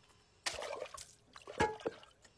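Liquid poured from a jug into an open mouth, running into it and then splashing out over the face as the mouth overflows, with two sharp splashes near the end.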